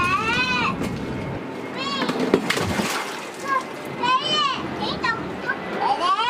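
Children's high-pitched voices calling out several times over water splashing, as a large fish thrashes in a shallow pond tank.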